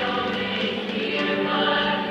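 A choir of voices singing a pop song together, with sustained held notes, heard from the audience in an auditorium.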